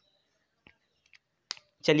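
Near silence broken by three or four faint, short clicks, the sharpest about one and a half seconds in, then a man's voice begins just before the end.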